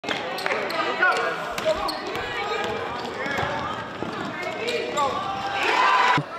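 A basketball being dribbled on a gym floor, short sharp bounces heard now and then through many overlapping voices of players and spectators.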